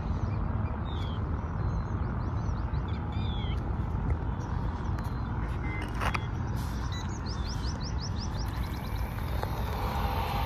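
Birds chirping over a steady low outdoor rumble, with a quick run of rising chirps about seven seconds in.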